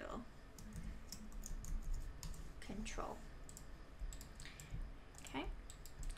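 Computer keyboard being typed on: irregular key clicks.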